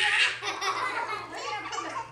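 Laughter, loudest in a burst at the very start and then breaking up into shorter pitched bursts.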